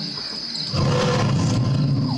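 Steady chirring of crickets, then a loud, low roar starting under a second in and lasting over a second.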